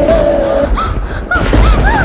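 A girl crying in short, gasping sobs and wails, each cry rising and falling in pitch, over background music whose held note stops about half a second in.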